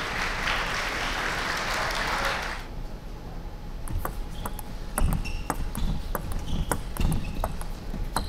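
Applause for about two and a half seconds, then a table tennis rally: the celluloid ball clicks sharply off the rackets and the table, and shoes squeak on the court floor.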